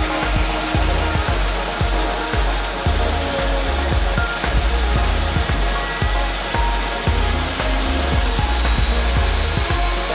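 Twin-turboprop jump plane, a de Havilland Canada DHC-6 Twin Otter, running its engines on the ground: a steady roar with a high turbine whine, laid under background music with a pulsing bass beat.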